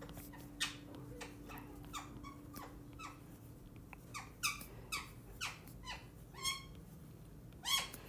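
A stylus squeaking and tapping on a tablet's glass screen as words are handwritten: a quick run of short strokes, each sliding down in pitch, with brief pauses between letters.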